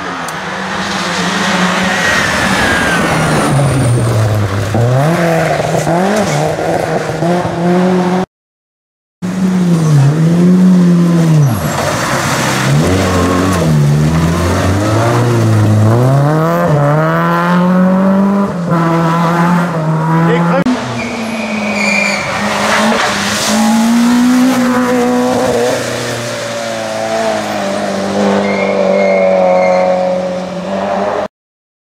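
Rally cars on a wet tarmac stage, several in turn, engines revving hard, their pitch climbing and dropping repeatedly as they shift and lift through corners; among them a BMW E30 and a Renault Clio. The sound cuts out completely for about a second just after 8 s.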